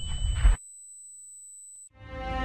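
A faint, thin, steady high-pitched electronic tone that cuts off just before the end, after a brief low rumble that stops about half a second in.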